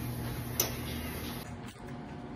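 Quiet room tone with a low steady hum and one sharp click a little over half a second in.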